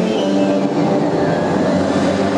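Stage soundtrack music with sustained notes over a steady rushing, rumbling layer, played loud over the hall's speakers.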